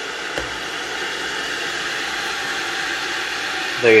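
Hamilton Beach 40898 stainless-steel electric kettle with the water at the boil: a steady rushing hiss of boiling water, with a light click about half a second in as the lid is shut.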